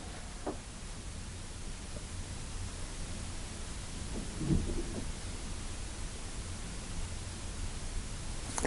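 Steady room background noise: an even hiss with a low rumble underneath, broken by a faint tap about half a second in and a soft low thump a little after the midpoint.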